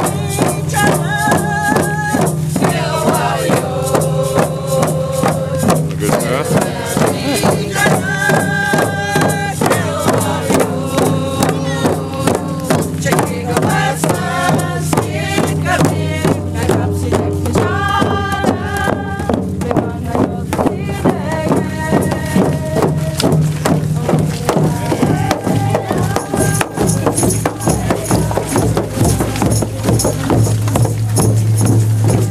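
A group of people singing a chant together, their voices holding sung notes in repeated phrases, over hand drums beaten in a steady rhythm.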